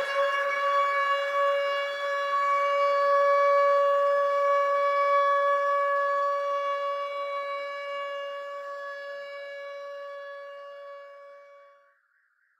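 A single long held note at one steady pitch with a stack of overtones, slowly fading and stopping just before the end: the closing note of a reggae dub track, left ringing after the beat and vocals drop out.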